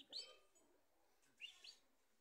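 Faint, high bird chirps: a quick pair at the start and two more short chirps about one and a half seconds in.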